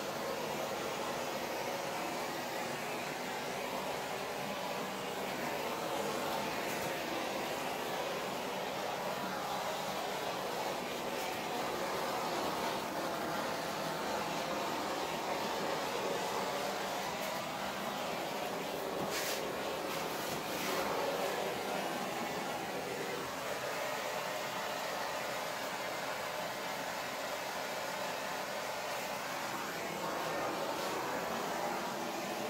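Steady blowing noise, even throughout, with a few faint clicks about two-thirds of the way through.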